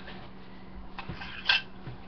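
A spoon clinking against a dish: a faint click about a second in, then one short, sharper clink about a second and a half in.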